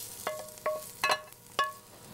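Wooden spoon knocking and scraping against a metal skillet as its contents are scraped out into a bowl. There are about four knocks, each leaving the pan ringing briefly.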